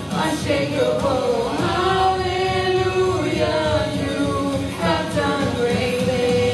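Church worship singers, women's and a man's voices together, singing a gospel praise song with long held, gliding notes.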